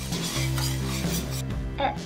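Red wine sizzling and bubbling as it deglazes a hot stainless steel pan, a spatula scraping the browned bits off the pan bottom. The sizzle drops away about one and a half seconds in.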